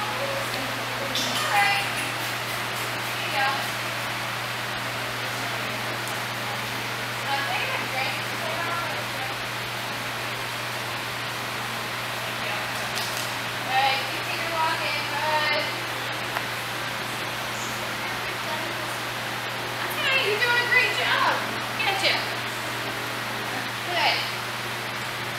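Indistinct background voices: scattered short bits of talk from people nearby, over a steady hiss and low hum.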